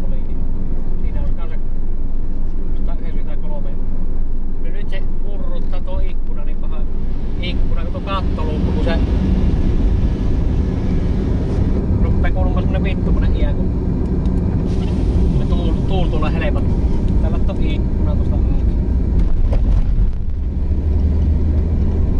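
Audi A6 2.8 V6 heard from inside the cabin while driving on the road: a steady low drone of engine and tyre noise, which grows stronger about eight seconds in.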